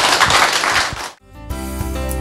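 Audience applauding, cut off suddenly about a second in; about half a second later instrumental music begins.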